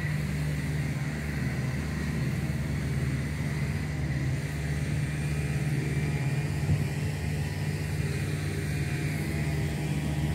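A steady low engine-like drone, unchanging in pitch, with a faint steady high whine above it.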